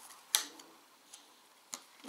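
A single sharp click of a wooden puzzle piece knocking against its board as it is fitted into place about a third of a second in, followed by two much fainter ticks.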